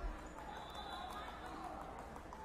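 Indistinct background chatter of several distant voices in a large hall, with one dull low thump at the very start.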